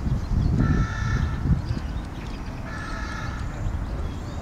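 Two drawn-out bird calls, each about half a second long and two seconds apart, over a steady low rumble.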